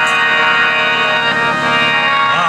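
Harmonium holding a steady sustained chord, with no drum strokes.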